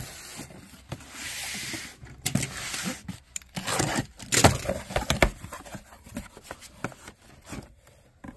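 Cardboard cases of glass jam jars being handled and opened: a rustle lasting about a second, starting about a second in, then a series of knocks and taps.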